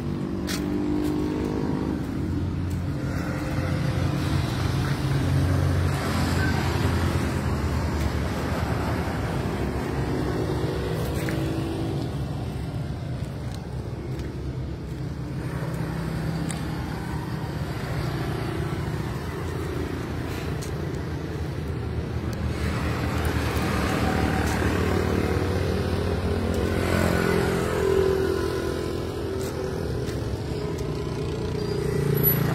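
Motor vehicle engine noise: a steady low rumble that swells up a few seconds in and again near the end.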